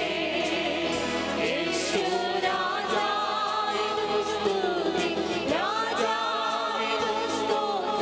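Choir singing a Malayalam Christian worship song, long wavering sung notes over a steady percussion beat.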